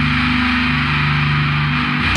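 Death-doom metal: heavily distorted guitars hold low chords over a dense wash of cymbals, with a change of chord about half a second in.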